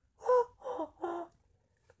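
A person's voice: three short voiced syllables within the first second or so, then quiet.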